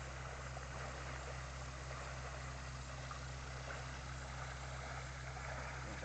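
Steady low hum of a water pump's engine running, pumping water into a waterfowl impoundment.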